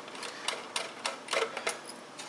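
Light, irregular metallic clicks and ticks of a small screwdriver working screws out of a bed-of-nails test fixture's back plate.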